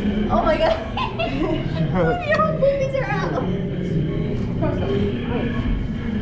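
Indistinct people's voices and chatter, with some light laughter, over a steady background hum of a busy room.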